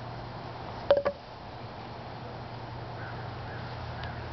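A hollow bamboo tube set down on a wooden plank: two sharp knocks close together about a second in, with a short hollow ring.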